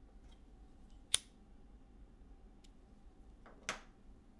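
Two sharp clicks, one about a second in and another near the end, over a faint steady hum.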